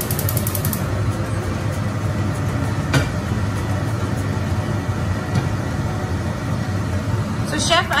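Steady low rumble of kitchen background noise, with a quick run of ticks at the start and a single sharp click about three seconds in.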